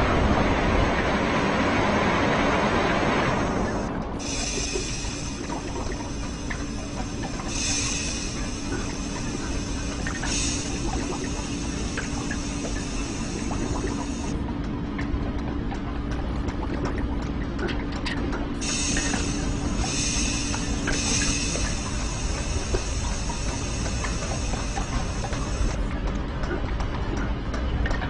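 Machine-like sound effects over music: a loud hissing rush that dies away about four seconds in, then a steady hum with high whining tones that come and go and faint clicking.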